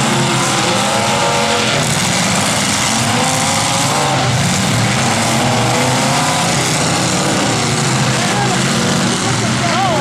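Engines of several demolition derby cars running and revving together, a loud steady din with pitch rising and falling as the cars are driven around the arena.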